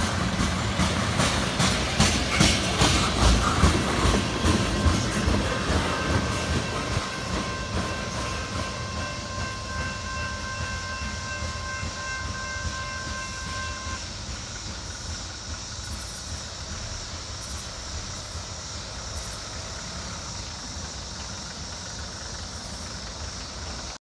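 Freight train tank cars rolling past, their wheels clicking over the rails, the sound fading as the end of the train moves away. A steady high whine holds for several seconds in the middle and cuts off suddenly.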